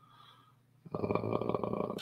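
A man's low, rasping vocal sound close to the microphone, a drawn-out creaky hum or groan about a second long that starts about halfway in.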